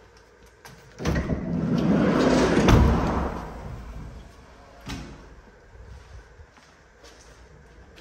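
Sliding side door of a Ram ProMaster-based camper van rolling shut over about two seconds and latching with a thump. A light click follows about two seconds later.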